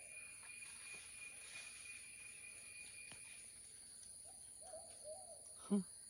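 Steady high-pitched droning of insects, likely cicadas or crickets, in the trees, one of its tones fading out about halfway. A few faint, short hooting calls from an animal come about four to five seconds in.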